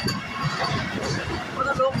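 Vande Bharat Express electric trainset passing close by: a steady rumble and clatter of wheels on the track, with a person talking near the end.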